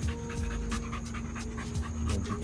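An American Bully dog panting quickly and evenly, about six breaths a second.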